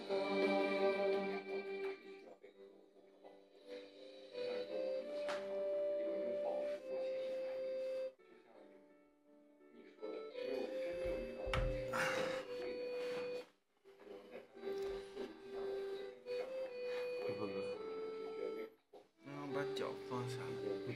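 A pop song playing back, its melody moving in long held notes. It breaks off briefly about eight seconds in, and a deep low beat enters around eleven seconds.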